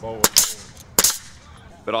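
Nail gun firing nails into wooden fence pickets: three sharp shots within about the first second.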